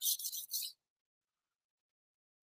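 A steel knife blade stroked across a whetstone: a few short gritty scrapes within the first second.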